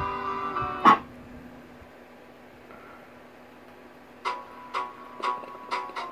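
Background music: held notes end with a short sharp hit about a second in, then after a quiet gap a run of plucked-string notes starts up, about two a second.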